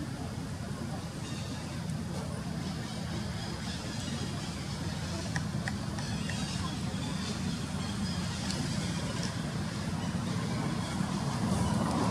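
Steady low rumble of outdoor background noise, with a few faint clicks about halfway through.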